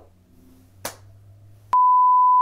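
A single sharp click, then, near the end, a loud steady pure test tone cuts in abruptly: the reference tone that goes with colour bars in a video edit.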